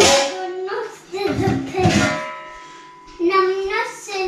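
A voice singing a few drawn-out, wordless notes, one held note fading away about halfway through.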